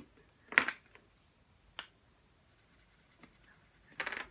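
A few sharp clicks of felt-tip markers being uncapped and handled at a table: a loud double click about half a second in, a single click near two seconds, and a faint one past three seconds.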